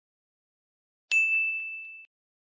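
A single bell 'ding' sound effect about a second in: one bright, high ring that fades and is cut short after about a second.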